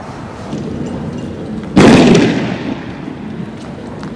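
A single loud blast about two seconds in, dying away over about a second, over a steady background rumble.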